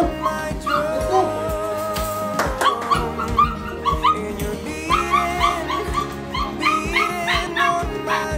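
Goldendoodle puppies yipping and whimpering in quick short cries, starting a couple of seconds in, over background music with a steady beat.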